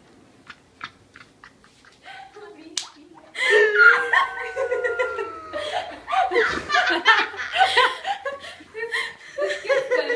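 Women laughing and giggling excitedly, starting about three and a half seconds in with a long held high squeal that slides slightly down, after a few seconds of near quiet with faint taps.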